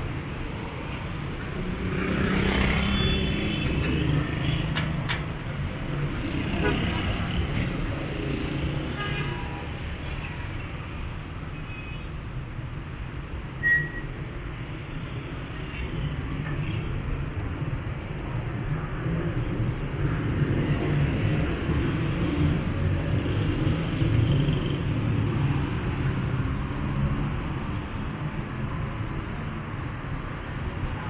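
City street traffic: cars, taxis and motorcycles driving past in a steady rumble, with a louder vehicle passing a few seconds in. About halfway through there is one brief sharp knock.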